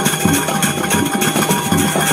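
Balinese gamelan music: kendang drums and metal cymbals played in a fast, steady rhythm over held metallic tones.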